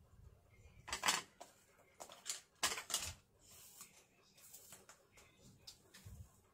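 Faint handling noises: a few short rustles and light taps as hands hold and press a craft-foam doll onto its glued foam base on a cutting mat. The clearest come about one second in and again two to three seconds in.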